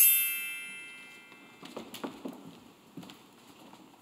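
Bar chimes swept in a quick rising glissando, then ringing on and dying away over about two seconds: a storybook cue for a fairy-tale opening. A few light footsteps and knocks on the stage floor follow as performers move.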